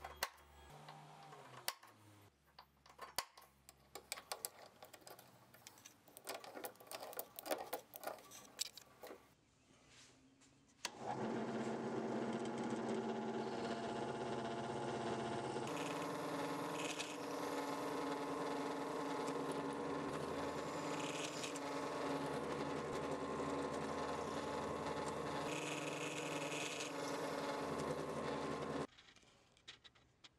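A scatter of light taps and clicks, then a benchtop drill press starts about eleven seconds in and runs steadily as it drills a row of holes through a 3/8-inch brass guard blank held in a vise. It stops suddenly shortly before the end.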